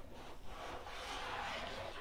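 Faint, steady rustling and rubbing of the Targus Spruce EcoSmart backpack's polyester fabric as it is handled, growing a little louder toward the end.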